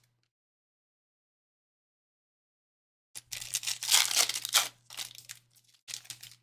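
Silence for about three seconds, then a foil trading-card pack wrapper torn open and crinkled for about two and a half seconds, with a short crinkle again near the end.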